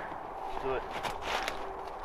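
Dry corn stubble rustling and crunching, with a few short crackles in the middle, as the stalks are handled or stepped on. A brief faint spoken reply comes near the start.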